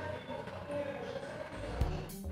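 Pan of milk tea simmering on a gas burner, a faint steady bubbling. Near the end a low rumble and a few soft knocks come in as a silicone spatula starts stirring in the aluminium pan.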